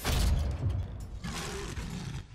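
Sound effects of an animated logo intro: a heavy hit with a low boom at the start, then mechanical creaking and grinding, and a second rush of noise in the second half.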